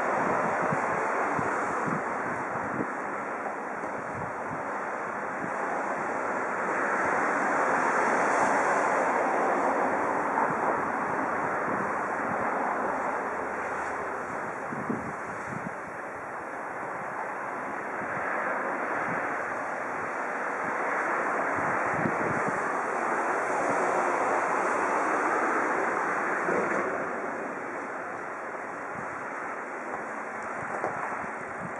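Wind blowing on the microphone: a steady rush that swells and eases in gusts every few seconds, with low buffeting rumbles.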